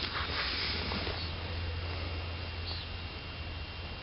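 Steady outdoor background noise with a low rumble, typical of wind buffeting the camcorder microphone. No gunshot or other sharp sound.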